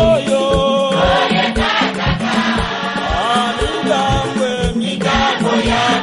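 A choir singing a worship song in chant-like unison over a steady drum beat, just over two beats a second.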